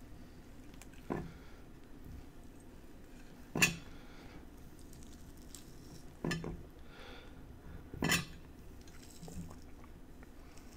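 Hands pulling apart the thick pith and flesh of a peeled grapefruit over a ceramic plate, with four short, sharp sounds two to three seconds apart; the loudest comes about a third of the way in.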